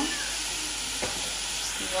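Oil sizzling steadily in a frying pan of chopped onion and green pepper as sliced mushrooms are tipped in and stirred with a wooden spoon. There is one short click about a second in.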